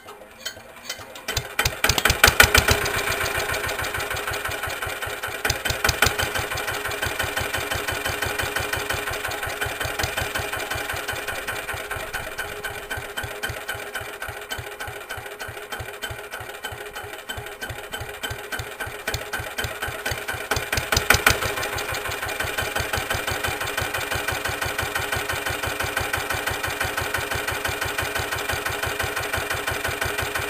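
Lister LT1 single-cylinder diesel stationary engine catching after hand-cranking about two seconds in, then settling into a steady, slow, knocking idle, with a brief louder spell about two-thirds of the way through. The engine is warming up after the start.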